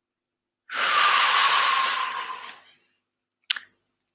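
A man's long, deliberate breath out into a close headset microphone: a loud sigh-like exhale of about two seconds that fades away, taken as a calming deep breath. About half a second before the end there is a single sharp click.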